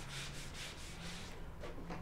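Dry-erase eraser scrubbing a whiteboard in quick back-and-forth strokes, stopping about a second and a half in, then two light clicks.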